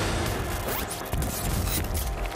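Sound effects of a TV segment's opening titles: a dense noisy wash with a heavy low bass under it, a rising sweep a little under a second in, and a few sharp hits.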